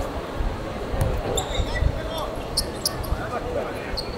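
Sounds of a small-sided football game on a hard court: players calling out, the ball thudding off feet a couple of times, and short high squeaks of shoes on the court surface.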